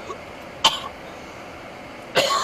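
A person coughing inside a car: a faint throat sound at the start, then one short, sharp cough about two-thirds of a second in.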